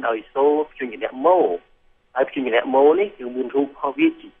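Speech only: a lecturer talking in Khmer, with a short pause about halfway through. The voice has a thin, phone-like quality, with the highs cut off.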